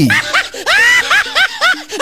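Laughter sound effect: a quick run of short, high-pitched laughs, each rising and falling in pitch, about three a second, over background music with held notes.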